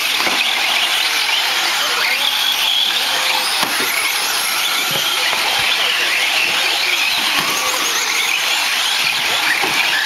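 Several radio-controlled 4WD short course trucks racing on a dirt track: a steady high-pitched motor whine that wavers up and down in pitch as they accelerate and brake, over a hiss of drivetrains and tyres on dirt.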